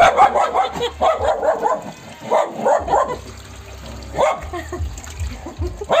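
Dog barking and yipping in a quick run of short, pitched calls over the first three seconds, with a few more about four seconds in.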